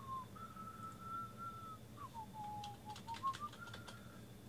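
A man whistling a few bars of a tune: a clear note held high, then dipping lower about halfway and climbing back up near the end. A quick run of sharp clicks in the second half.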